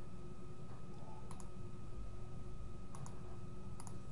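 Computer mouse clicking: three quick pairs of clicks, about a second in, at three seconds and near the end, over a steady faint hum of room tone.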